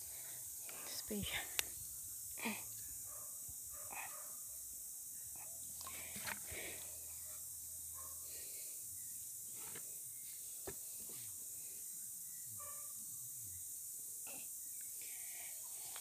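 Quiet pondside ambience: a steady high hiss, a few faint, brief murmurs of a voice and a couple of small sharp clicks.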